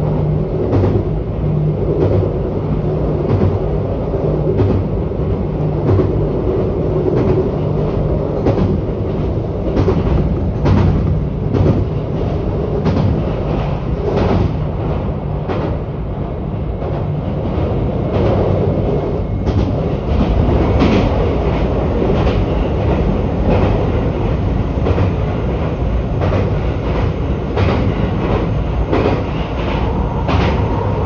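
A train running at speed, heard from inside the passenger car: a steady rumble of wheels on rail with irregular clacks as the wheels pass over rail joints.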